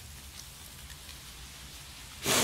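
Faint, steady background rain ambience, an even patter with no distinct drops standing out.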